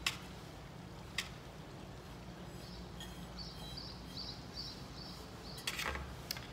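Paintbrush and ceramic fairy-house piece being handled over a paint plate: light clicks and taps, one right at the start, one about a second in and a small cluster near the end, over a low steady room hum. A faint series of short high chirps runs through the middle.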